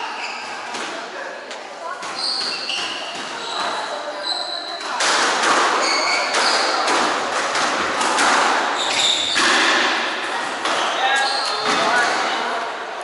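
Squash rally: the ball sharply struck by rackets and smacking off the court walls from about five seconds in, with sports shoes squeaking on the wooden floor.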